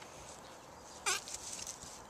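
A French bulldog gives one short, high yelp that falls sharply in pitch, about a second in, over a steady background hiss.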